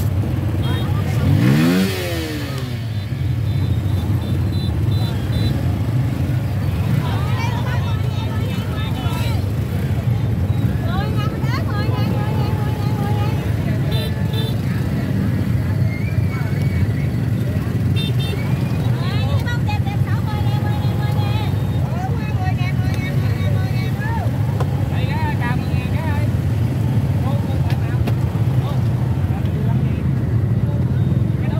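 Motor scooter engine running steadily at low speed, with a short rising rev about two seconds in. Voices of people talking come and go over the engine.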